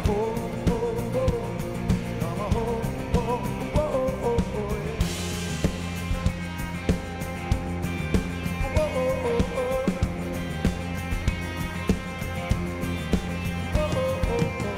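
Live rock band playing a song: drum kit keeping a steady beat under guitars, keys and bass, with a male lead vocal singing phrases early on and again around the middle. A cymbal crash brightens the sound about five seconds in.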